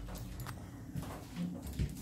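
Faint, irregular clicks and knocks over a low rumble: handling noise from a handheld phone camera and footsteps, with a brief low hum of voice about halfway through.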